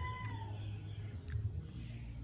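A single drawn-out animal call: a held tone that falls away and ends under a second in, over a low steady rumble.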